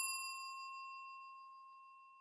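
A single bright bell-like ding, the chime sound effect of a YouTube subscribe-button animation, ringing out and fading away steadily.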